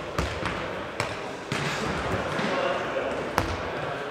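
Football-tennis ball hitting feet and the wooden sports-hall floor, a handful of sharp thumps echoing in the large hall, the loudest about three and a half seconds in, with players' voices in between.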